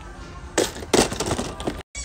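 Crackling, rustling handling noise in two bursts, about half a second in and a second in, the second louder. The sound cuts out for an instant near the end.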